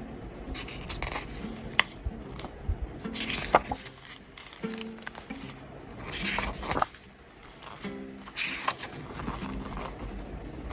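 Lofi hip-hop background music, with soft paper swishes and a few clicks as the pages of an album lyric book are turned.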